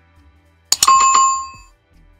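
Subscribe-button animation sound effect: quick clicks about two-thirds of a second in, then a bright notification-bell ding that rings for about a second and fades.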